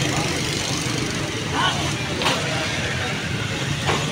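A vehicle engine idling steadily under busy street noise, with people's voices calling out briefly a few times.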